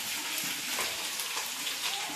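Steady sizzle of greens (shaak bhaja) frying in oil, a soft, even hiss.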